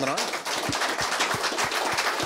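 Audience applauding: many hands clapping together in a dense, steady stream of claps.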